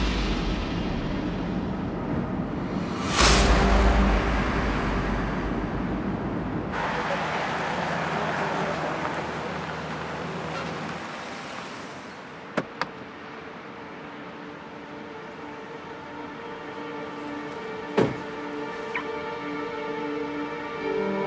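Background music over a car's steady road noise, with a loud whoosh about three seconds in. Later, over quieter music, a car door clicks twice and then shuts with a thump near the end.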